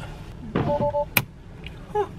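A single sharp plastic click a little over a second in, as a replacement LED lamp is pressed into its opening in the underside of a Tesla Model 3 door trim. A short electronic two-tone beep sounds just before it.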